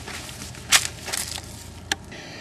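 Three short, crunching rustles close to the microphone over a low steady hum, as of dry leaves or twigs being stepped on or brushed while moving through a fig tree.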